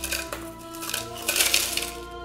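A metal spoon scraping crushed ice out of a porcelain bowl and clinking against it, with a longer burst of scraping a little past halfway, over background music.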